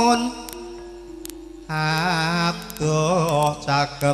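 A solo voice singing a slow Javanese song, with long held notes that waver. The voice breaks off just after the start, leaving a faint steady held tone. It comes back less than two seconds in, in short phrases.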